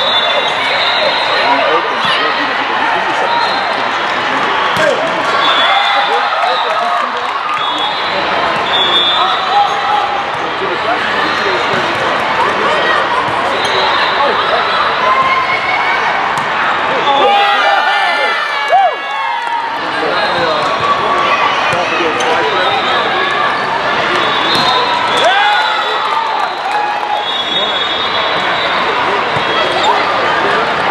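Volleyball match in a large sports hall: a constant hubbub of many players' and spectators' voices, with the thumps of the ball being hit and landing. A louder sharp hit comes a little past halfway.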